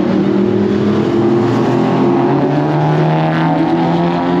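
Drag-racing car engines running hard down the strip. The engine pitch drops once a little past halfway, as with an upshift, then climbs again.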